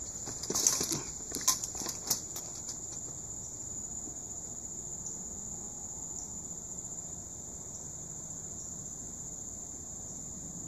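Several sharp knocks and rustles in the first three seconds as a person climbs over a gate, jostling the handheld phone. After that comes a steady, high-pitched chorus of crickets or other insects.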